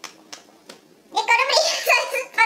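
A young woman speaking Czech after a short quiet pause. The pause holds a few faint clicks, about three, spaced about a third of a second apart.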